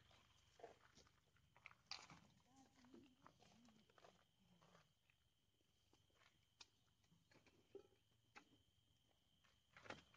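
Near silence: faint outdoor background with a few scattered soft clicks and a faint steady high whine.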